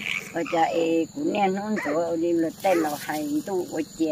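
A woman speaking in Hmong, with a steady high insect drone behind.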